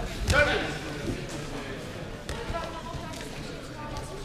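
A sword-fencing exchange in a reverberant hall: a loud sharp knock with a short shout about a third of a second in, then a couple of lighter knocks, over background chatter.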